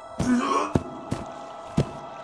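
An animated character's short throaty grunt, followed by three sharp knocks spaced irregularly over the next second, with a faint steady musical tone underneath.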